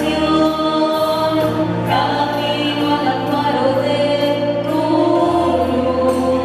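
Several women singing a hymn together into microphones, amplified, over sustained electronic keyboard chords. The notes are long and held, and the low accompaniment changes chord about a second in and again near the end.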